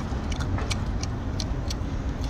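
A person chewing a mouthful of small octopus, with a few sharp clicks from chopsticks and mouth, over a steady low background rumble.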